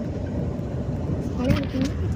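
Steady low rumble of a moving bus heard from inside the cabin, with a short voice sound near the end.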